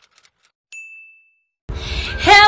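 A single bright chime sound effect, one ringing ding that fades away over about half a second. Near the end a louder burst of noise with a low hum cuts in suddenly.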